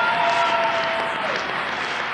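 Audience applauding, a steady dense clapping heard on an old cassette recording.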